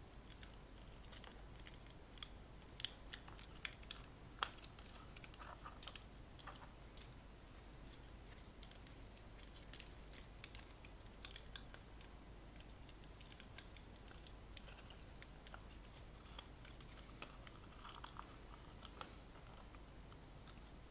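Faint, scattered small clicks and ticks of plastic parts of a disco light bulb's housing being handled and fitted by hand, coming in short clusters.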